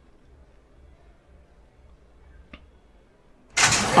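Faint background at the starting gate with a single small click, then near the end the starting gate's doors spring open all at once with a sudden loud metallic clang, a ringing carrying on after it as the horses break.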